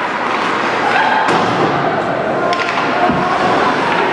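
Ice hockey play in a rink: steady arena noise of skates and play, with a couple of sharp knocks of sticks and puck, and voices from players and bench.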